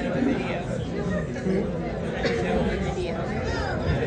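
Several people chatting, with no music playing.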